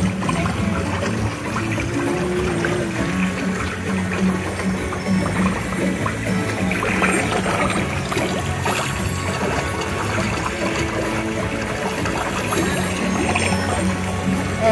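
Background music with a steady low drone, over water trickling and running down an artificial rock stream.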